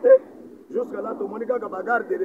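A man's voice speaking, with no other sound standing out.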